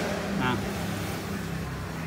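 Road traffic noise: a vehicle engine running steadily, with a man's brief "á" about half a second in.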